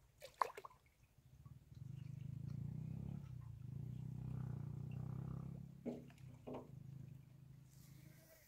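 Hands groping in shallow muddy water along a weedy bank, with a few short splashes near the start and again about six seconds in. Through the middle runs a long low rumbling drone, louder than the splashes overall, with a short break about three seconds in.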